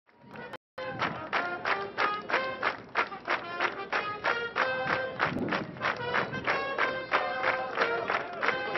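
Upbeat band music, with held horn-like notes over a steady beat of about three strokes a second. It starts with a brief drop-out just before one second in.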